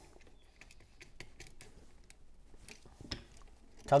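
Faint scattered clicks and scrapes of a screwdriver tightening the ground terminal screw on an occupancy sensor switch, with one sharper click about three seconds in.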